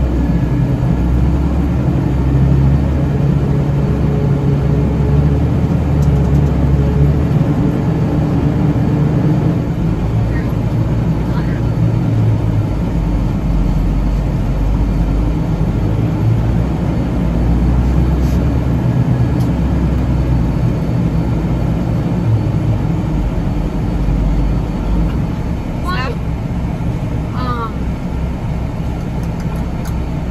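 Semi-truck diesel engine heard from inside the cab while driving, a loud low rumble whose pitch shifts now and then. A few short, high squeaks near the end.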